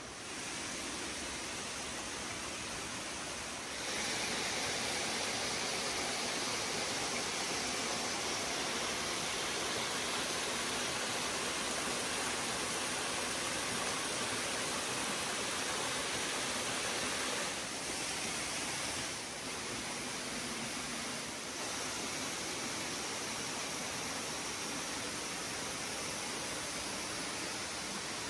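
Steady rush of running water from a partly frozen mountain waterfall and stream. It gets louder about four seconds in.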